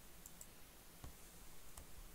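A few faint, isolated clicks of a computer keyboard or mouse, about four in two seconds, against near-silent room tone.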